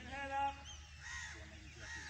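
A crow caws once, a short call just after the start that is the loudest sound. Other birds chirp and whistle in the trees after it.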